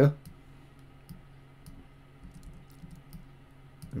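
Faint, scattered clicks of a computer mouse and keyboard over a low steady hum.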